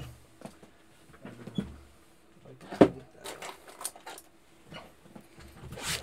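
Small knocks and clicks of parts and objects being moved while searching for something, with one sharp knock about three seconds in as the loudest.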